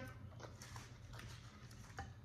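Faint chewing and mouth clicks, a few scattered soft ticks, over a low steady hum.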